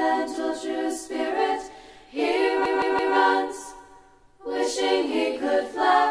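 Unaccompanied voices singing, a cappella, in phrases with short breaks about two and four seconds in.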